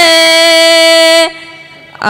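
A boy's voice holding one long, steady sung note of an unaccompanied Urdu naat, breaking off a little over a second in, followed by a short pause.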